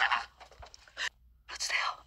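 A breathy whispered voice in three short bursts: one at the start, one about a second in, and a longer one near the end.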